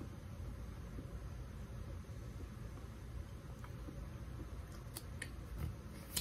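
Steady low room noise in a small office, with a few faint sharp clicks in the last second or two.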